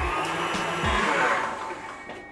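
Tilt-head stand mixer running at medium speed, its wire whisk beating egg whites and sugar into meringue, with a steady motor whir that fades away near the end as the mixer winds down.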